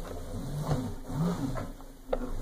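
Hoverboard hub motors whirring, the pitch rising and falling twice as the wheels speed up and slow down, now driven by newly replaced foot sensor pads.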